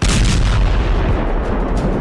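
A loud explosive rumble that starts suddenly and carries on as a deep, dense rumble, with no break.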